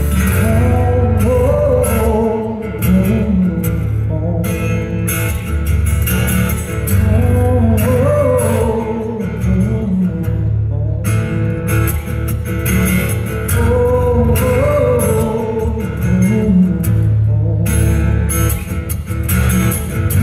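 A song played live on acoustic guitar with a voice singing over it, loud and continuous.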